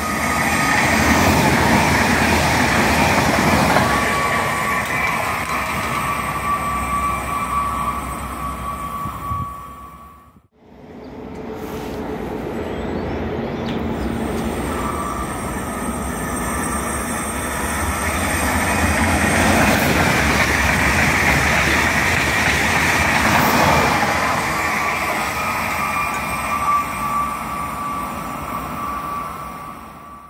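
Trains passing at speed along the main line: a loud rush of running noise with a steady high whine. It swells and fades, breaks off abruptly about ten seconds in, then builds again for a second train and fades.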